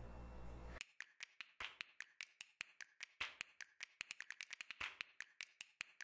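A quick, irregular run of small clicks and taps, several a second and starting about a second in, from hands handling screws, the plastic battery cover and the battery pack on the underside of an Ecovacs Deebot Slim DA60 robot vacuum.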